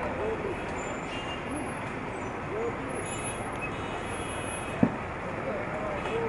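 Busy street ambience: a steady wash of traffic noise with the voices of passers-by mixed in. One sharp knock stands out about five seconds in.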